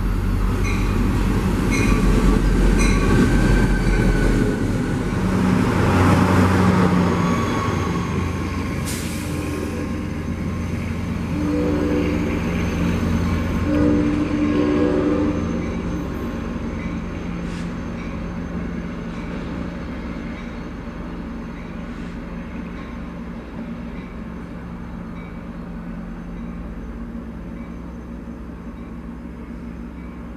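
Diesel-hauled passenger train passing a station platform. Its rumble is loudest over the first several seconds and then slowly fades as it moves away. About twelve to fifteen seconds in, the horn sounds in several short blasts.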